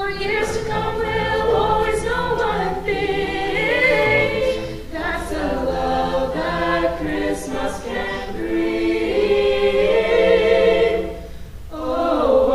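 High-school a cappella vocal group singing a Christmas song in close harmony, voices only with no instruments, holding and moving chords. The voices drop out briefly near the end, then come back in.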